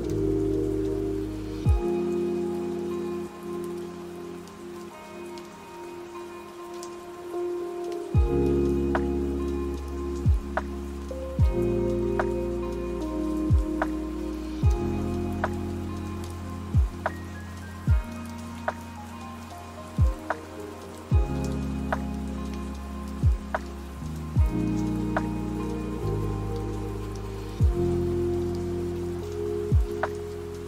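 Lofi hip-hop track with soft held chords, a deep bass line and a kick drum about once a second, over a steady sound of rain. The drums thin out for a few seconds near the start and return about eight seconds in.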